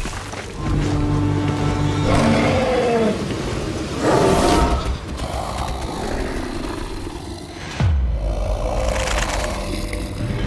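Dramatic film score with a giant lizard monster's growls and roars over it, and a deep falling boom about eight seconds in.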